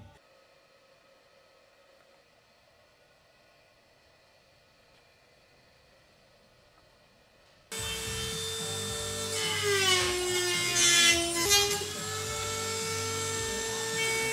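Near silence at first; then, about eight seconds in, a handheld rotary tool starts up with a high steady whine as it cuts into the fibreglass battery enclosure. Its pitch sags for a couple of seconds under load and then recovers.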